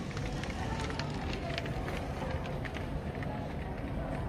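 Rain hissing steadily, with irregular light ticks of drops striking window glass.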